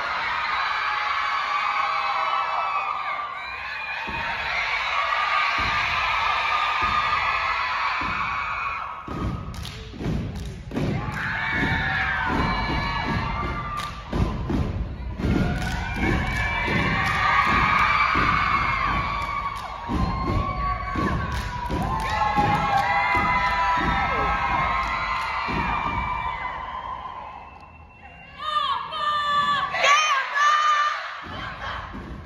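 Step team stomping and clapping in unison, a regular run of thuds from about a third of the way in, under a crowd cheering and yelling throughout.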